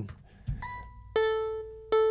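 Logic Pro's Retro Synth playing back notes recorded from a pad controller: single synth notes one after another, a high one about half a second in, a lower, louder one just after a second that slowly fades, and another near the end.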